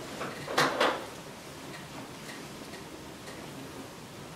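A few short handling noises, rustles and light knocks, in the first second, then quiet room tone.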